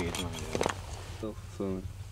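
Short vocal exclamations from a person's voice, with a few sharp clicks in the first second and a steady low hum underneath.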